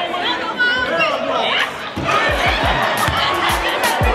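Crowd chatter and voices echoing in a gymnasium, with music and its deep bass beat coming in about halfway through.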